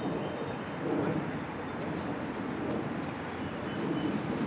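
Steady outdoor background noise, an even hiss with no distinct event.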